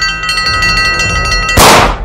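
A hanging metal plate school bell struck rapidly with a hammer, ringing with several clear overlapping tones over background music. About a second and a half in, the ringing is cut off by a loud rushing, crash-like burst, the loudest sound here.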